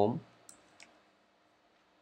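Two light clicks of computer keyboard keys, about a third of a second apart, while a word is typed.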